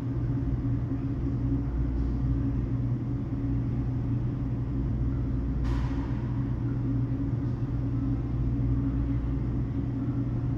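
Steady low hum of running machinery, with one short rushing noise a little before the six-second mark.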